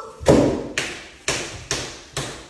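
A run of four heavy thuds, about two a second, each dying away quickly, the first the loudest.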